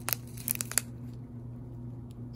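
Plastic bags of square resin diamond-painting drills crinkling as they are handled, with a quick cluster of sharp crackles in the first second. A steady low hum runs underneath.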